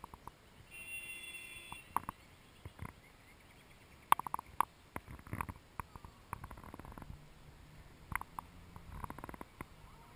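Handling noise from a hand-held camera being panned: scattered faint clicks and knocks over a low rumble.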